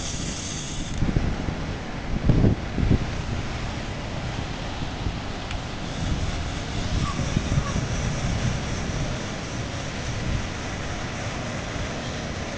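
Wind buffeting the microphone over the steady wash of surf, with stronger gusts about two seconds in.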